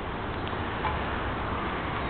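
Steady outdoor background noise, an even hiss with no distinct event.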